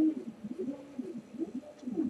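A dove cooing: a few short, low, soft coos.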